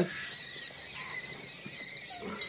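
Faint high-pitched peeping of a brooder full of young chicks over a low hiss, with a brief tap near the end.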